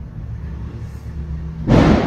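A steady low electrical hum on the lecturer's microphone, then a loud, short puff of breath noise into the microphone near the end that fades quickly.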